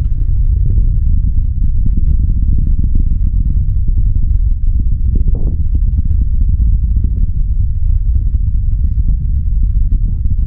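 Falcon 9 rocket's first-stage engines heard from far off during ascent: a loud, steady deep rumble laced with continuous crackle.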